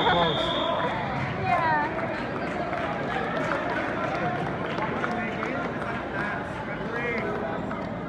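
Hubbub of many voices and shouts in a gym. A steady high electronic beep from the scoreboard timer, which has run down to zero, cuts off within the first second.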